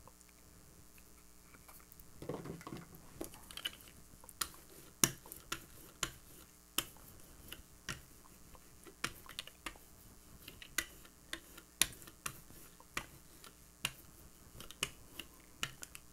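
Irregular sharp clicks and taps, one or two a second, as acrylic paint is dabbed with a brush and rolled out with a rubber brayer on a gel printing plate.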